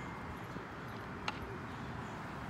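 Steady, quiet outdoor background noise with one short click a little over a second in.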